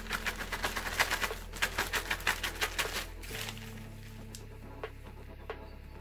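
Clear plastic zip-lock bag crinkling rapidly as a hand rummages in it for about three seconds, then a few faint paper ticks as a folded slip is taken out. Soft background music underneath.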